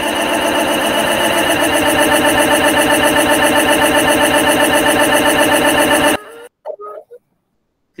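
Loud, steady electronic buzz of many layered tones, pulsing rapidly, that cuts off suddenly about six seconds in: an audio feedback loop in a video call, the meeting's own sound fed back through screen sharing with presentation audio switched on.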